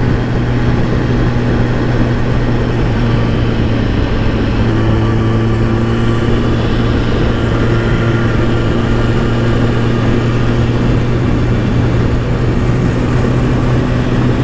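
Kawasaki ZX-10R sport bike's inline-four engine running at a steady cruise, its note held at a constant pitch, under a constant rush of wind noise.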